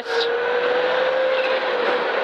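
Rally car engine heard from inside the cabin, pulling along a 250-metre straight over a crest. Its note rises slightly, then holds steady, over road and tyre noise.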